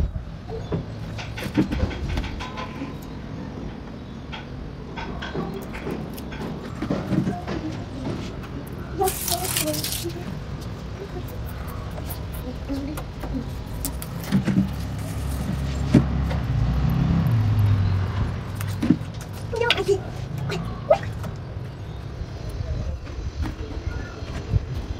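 Hands working an adhesive strip along a window frame: scattered clicks and handling noise, with a short ripping sound about nine seconds in, like tape being peeled. Underneath runs a low rumble that swells near the middle, with faint voices.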